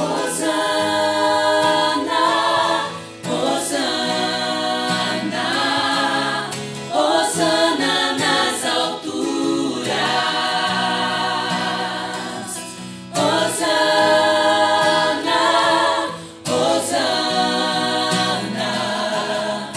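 Mixed male and female vocal ensemble singing a worship song in harmonized parts, accompanied by acoustic guitar. The sung phrases break off briefly every few seconds.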